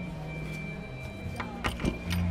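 Soft film background score with low sustained tones. Near the end come a few short knocks and a brief creak as a man sits down on a wooden chair at a table.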